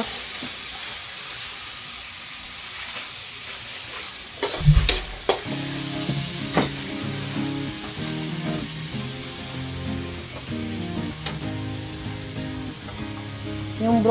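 Diced carrots sizzling in hot oil in a wok, stirred with a metal spatula. A loud knock about five seconds in.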